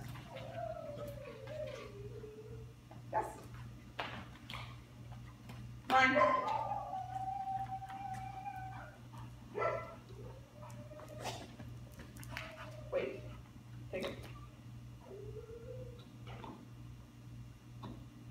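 Dog whining in thin, wavering high whines: one at the start sliding downward, a longer, steadier one from about six to nine seconds in, and a short one near the end.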